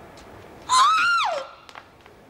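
A woman's high-pitched vocal whoop, a single cry under a second long, its pitch held high and then sliding down at the end.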